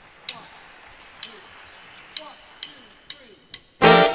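A drummer's count-in on sticks: six sharp clicks, two slow then four quick, over faint voices. The full band comes in loudly just before the end.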